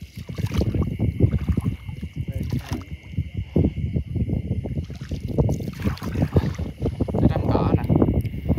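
Water swishing and splashing in a continuous, irregular rhythm as someone wades through shallow floodwater among rice-field grass.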